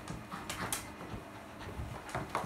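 A towel rubbing a wet West Highland terrier's coat in quick, irregular scrubbing strokes.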